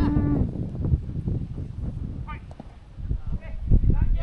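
Players on a football pitch shouting short calls to each other, some distant, with a low, gusting rumble of wind on the microphone.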